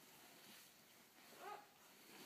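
Near silence, broken by one brief, faint babbling sound from a baby about one and a half seconds in.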